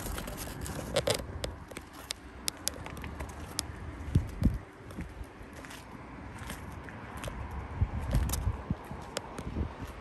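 Footsteps scuffing on a tarmac forecourt, with scattered light clicks and scrapes at an irregular pace.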